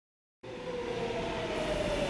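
Steady mechanical rumble with a held hum, cutting in abruptly out of dead silence about half a second in.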